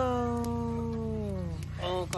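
A rooster crowing: one long held note of the crow that sinks slightly in pitch and fades out about one and a half seconds in.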